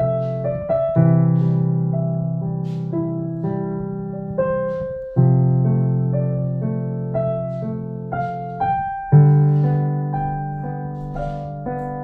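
Background piano music: a slow, gentle piece of held chords that fade away, with a new chord struck every few seconds and single melody notes above.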